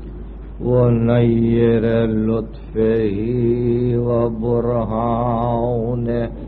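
A man's voice chanting in two long, drawn-out melodic phrases with held notes, from an old tape recording with a steady low hum and a muffled top end.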